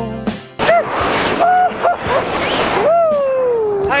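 Background music ends about half a second in, then a man's voice lets out a few drawn-out exclamations over a rushing hiss of wind on the microphone, ending with a long falling "whoa".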